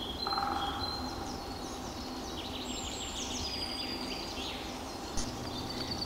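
Several songbirds singing, with overlapping high chirps and trills, over a steady low background noise.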